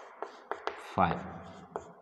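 Chalk writing on a chalkboard: a few sharp taps and short scratches as digits are written, with a short spoken syllable about a second in.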